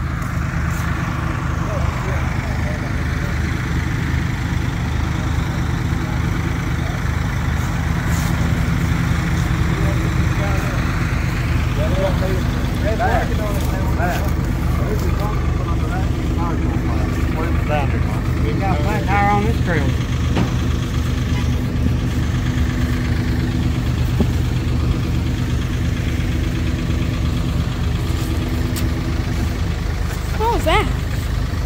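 An engine idling steadily, a low even rumble throughout, with indistinct voices nearby in the middle.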